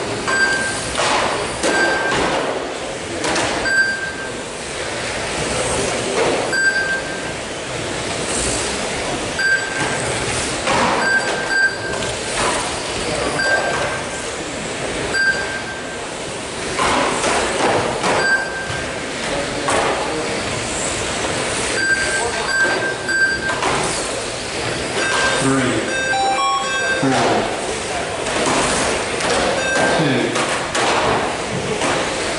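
Schumacher GT12 1/12-scale electric RC cars racing on a carpet track, their motors whining and tyres hissing as they pass. Short high beeps come at irregular intervals, often in pairs, as a lap-counting system marks cars crossing the line.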